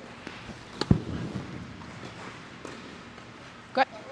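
Tennis ball struck with a racket: one sharp pop about a second in, with a few fainter ball hits and bounces around it.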